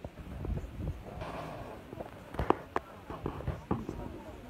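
Faint chatter of a crowd, broken by a handful of sharp clicks and knocks, the loudest about two and a half seconds in.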